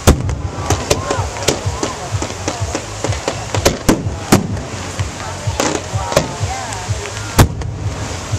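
Aerial firework shells bursting in quick succession, a rapid series of sharp bangs. The loudest bangs come right at the start, about four seconds in, and near the end.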